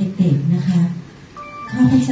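A woman talking through a microphone and hall PA, and about one and a half seconds in, a short electronic jingle of a few high steady tones stepping in pitch.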